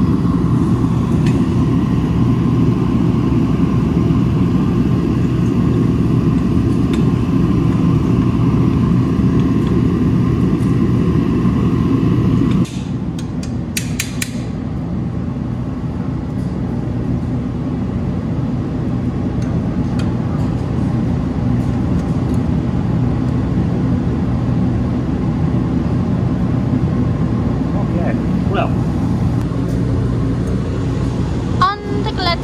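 Steady low rumbling background noise that drops abruptly about 13 seconds in, with a few sharp clicks just after.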